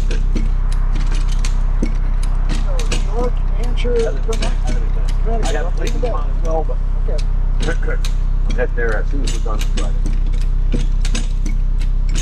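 Hi-Lift jack worked as a hand winch, its ratchet mechanism clicking over and over as the handle is pumped to drag the chain and the vehicle forward. A steady low hum runs underneath.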